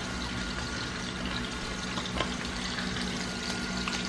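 Pot of bean broth simmering on a gas stove: a steady bubbling hiss, with a faint steady hum underneath.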